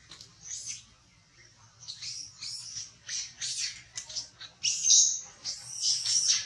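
A run of short, high-pitched chirping animal calls, one after another, with a brief lull about a second in and the loudest call near the end.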